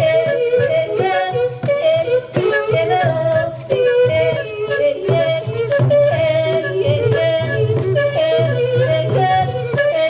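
A woman singing a melodic song in a high voice through a microphone and PA, with percussion keeping a steady beat of sharp clicks several times a second.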